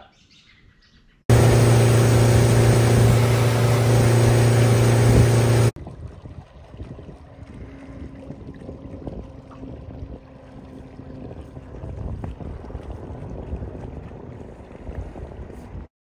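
A boat's outboard motor running loud and steady for about four seconds, then cutting off abruptly. After that comes a much quieter stretch of outdoor noise with a faint engine hum.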